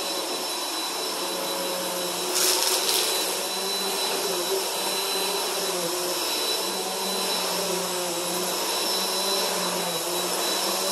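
Upright bagless vacuum cleaner running over shag carpet, its motor humming steadily. About two and a half seconds in there is a brief, louder burst of noise.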